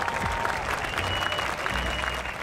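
Applause sound effect: a crowd clapping densely and evenly, with a few faint high held tones over it.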